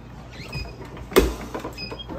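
Manual clamshell heat press being worked by its handle, with one loud metal clunk about a second in.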